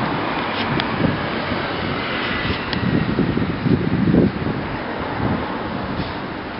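Steady outdoor traffic noise from the street, with a louder low rumble swelling about three to four seconds in.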